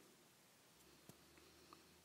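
Near silence: faint room hiss after the song, with a couple of tiny clicks.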